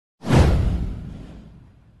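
Intro sound effect: a swoosh with a deep boom, starting suddenly and fading out over about a second and a half, its pitch sweeping downward.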